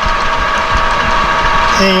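Metal lathe running, a steady hum with several constant whining tones from its motor and gearing.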